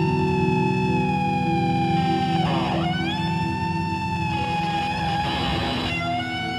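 Improvised two-guitar duet: a long held note that slowly sinks in pitch over low droning notes. It is broken about halfway by a brief noisy swoop, then picked up again.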